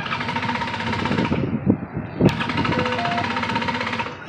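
Paramotor's two-stroke engine running at power with a steady buzz, its upper part dipping briefly midway, then cutting off sharply at the end.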